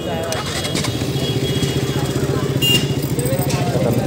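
KTM RC single-cylinder motorcycle engine idling steadily, building over about the first second and then settling into an even, rapid beat.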